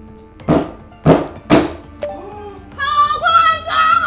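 Three hard knocks about half a second apart: a rock-hard dalieba loaf struck down on a walnut on a wooden cutting board, cracking its shell.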